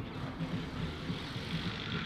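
A road vehicle passing: its hiss builds and then drops away near the end, over a steady low rumble of urban background noise.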